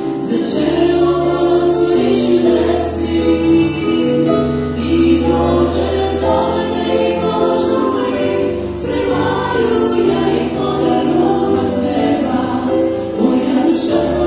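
A small group of women singing a Christian worship song together, accompanied by piano with sustained bass notes.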